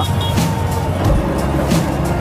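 Background music over a motorcycle riding along, with its engine and road noise running steadily underneath.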